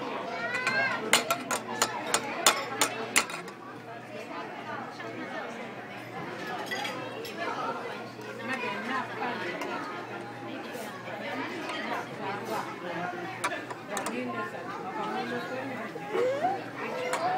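Murmur of many diners' voices in a restaurant. In the first three seconds there is a quick run of sharp clinks of cutlery on tableware.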